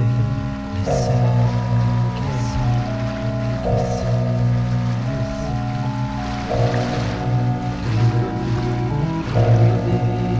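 Instrumental late-1960s electronic music with no singing: sustained, organ-like electronic chords change about every second and a half over a steady low drone. A hissing wash of noise swells up in the middle.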